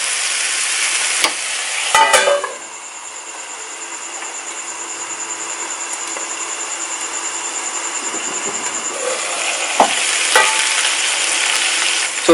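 Chicken pieces sizzling as they fry in a non-stick pan. About two seconds in, a lid goes on with a few knocks and the sizzle becomes quieter and muffled. Near the end the lid comes off with a couple of clicks and the sizzle is louder again.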